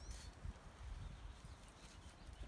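Quiet outdoor background with a faint low rumble, and a short bird chirp right at the start.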